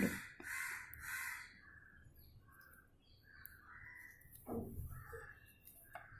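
A bird calling repeatedly in short calls about every two-thirds of a second, loudest in the first second or so, with a brief dull thump a little past halfway.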